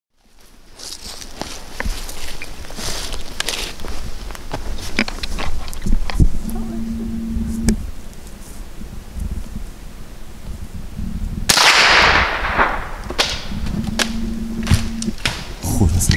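Footsteps and gear knocking as hunters walk over frosty ground. About eleven and a half seconds in, a bird flushes close by: a sudden loud rush of wings that fades within about a second and a half, startling enough to be likened to a cannonball.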